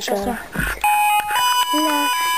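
A child sings a short 'la', then an electronic tune of beeping notes starts about a second in. The notes are steady and step from one pitch to the next, like a musical toy or a ringtone melody.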